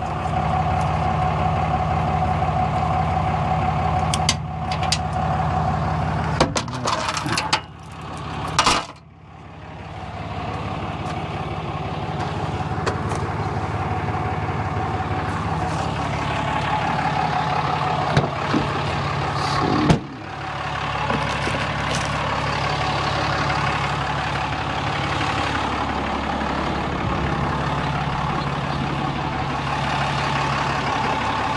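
Pickup truck engine idling steadily, its low hum dropping slightly in pitch near the end. Over it, in the first several seconds, clicks and metal rattles as a cable is fastened to the frame at the fifth-wheel hitch, and two sharp knocks about two-thirds of the way through.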